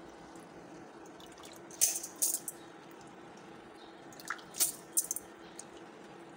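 Rice being washed by hand in water: short bursts of splashing and dripping, a couple near two seconds in and a cluster a little after four seconds in.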